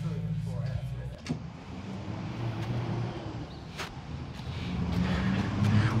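Street traffic ambience with a car's engine going by, growing louder towards the end.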